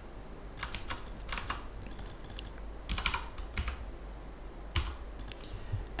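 Computer keyboard typing in a few short runs of keystrokes with pauses between, over a steady low hum.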